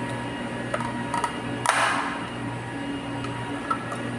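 Steady low hum of pumps and equipment in a water treatment plant room, with a few light clicks and a short hiss a little under two seconds in.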